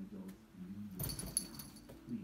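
Cat making a low, drawn-out yowl that wavers in pitch, with a brief jingling rattle about a second in.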